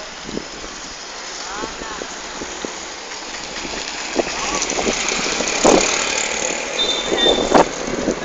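An auto-rickshaw driving past close by, its engine and road noise building up and loudest a little past the middle.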